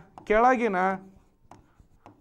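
A man's voice saying one drawn-out word, then a quieter stretch with faint taps of a pen writing on a board.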